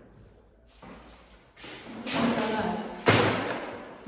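Paper shopping bag rustling as it is handled, then a single sharp thud about three seconds in, the loudest sound.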